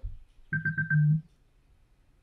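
Electronic timer beeping: four quick, evenly spaced beeps running into a slightly longer final tone.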